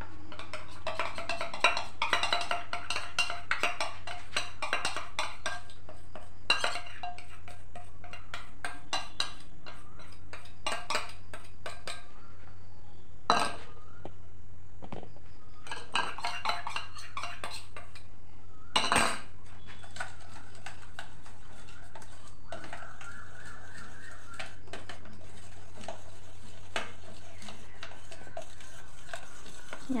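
Kitchen utensils clinking and scraping against stainless-steel pots and a mixing bowl in a double boiler, with two sharper knocks about 13 and 19 seconds in. A steady low hum runs underneath.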